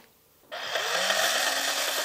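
A steady, machine-like buzzing noise that starts abruptly about half a second in, after a brief silence, with a faint low hum beneath it that rises and then falls in pitch.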